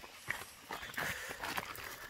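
Rotten bench wood crackling and snapping as it is pried and broken apart by hand, a run of irregular small cracks and crunches that cluster thickest about halfway through.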